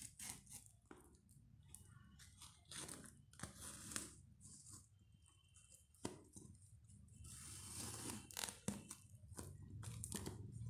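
Clear plastic wrap and packing tape on a cardboard parcel being picked at and torn by hand: short, irregular crinkling and tearing bursts with a few sharp clicks, the longest stretch near the end.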